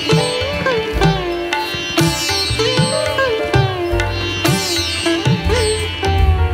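Background music: a plucked string instrument plays a melody of sliding, bending notes over low beats that fall about once a second.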